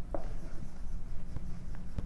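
Marker pen writing on a whiteboard: a faint scratching of the felt tip with a few small ticks as letters are stroked out.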